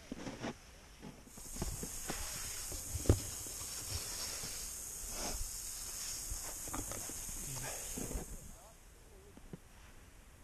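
Snowboard sliding and scraping over packed snow: a steady high hiss that starts about a second in and stops a little before the end, with scattered knocks and bumps, the loudest about three seconds in.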